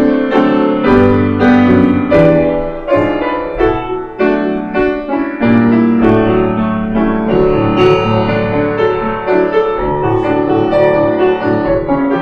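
Grand piano played solo, notes and chords sounding in quick succession and ringing on over one another.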